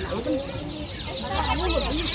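Many chicks peeping at once, a dense high chirping that builds about half a second in, over the voices of a crowd.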